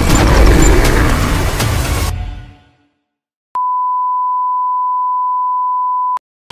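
A loud, dense intro sound effect with clicks that fades out about two and a half seconds in; after a short silence, a single steady high beep tone, one pure note held for about two and a half seconds.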